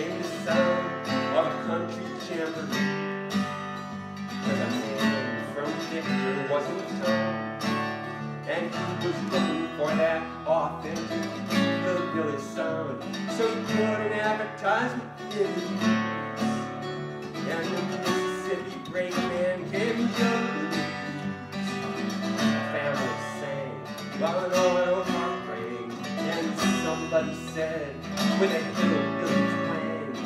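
Steel-string acoustic guitar played solo, a steady run of picked notes and chords with no voice yet, the instrumental lead-in to a song.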